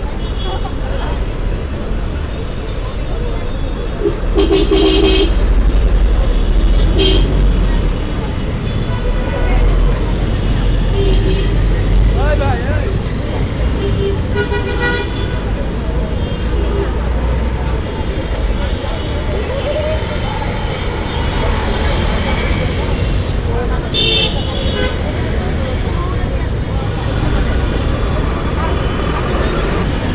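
Road traffic: a steady low engine rumble, with vehicle horns honking several times, most plainly about four seconds in, around seven and fifteen seconds, and again near twenty-four seconds. Voices are heard in the background.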